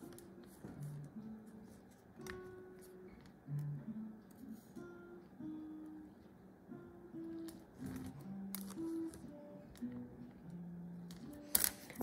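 A guitar played faintly in the background, picking out a slow run of single notes one after another.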